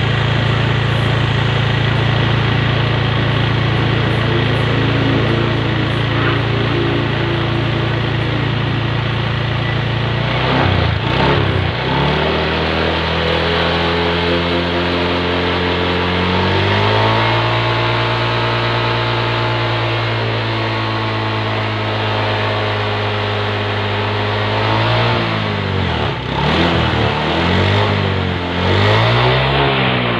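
Fuel-injected automatic scooter engine running on the centre stand with the rear wheel spinning free, after an injector-cleaner treatment. It holds a steady speed at first, then from about ten seconds in it is revved up and let back down several times.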